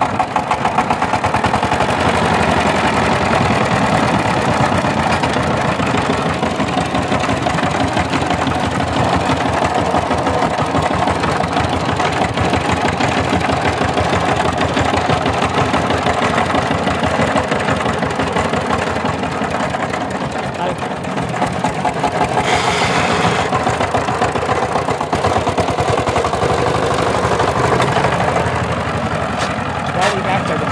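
Single-cylinder diesel engine of a Sifang power tiller running steadily just after being started, with a rapid, even chug from each firing stroke.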